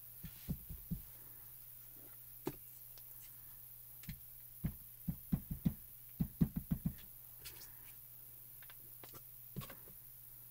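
Soft, dull taps of an ink pad dabbed onto a clear rubber stamp on an acrylic block: a quick run of about ten taps in the middle, with a few lighter handling knocks at the start and near the end.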